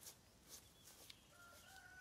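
A rooster crowing faintly: one long, steady call that begins a little past the middle. A few faint clicks come before it.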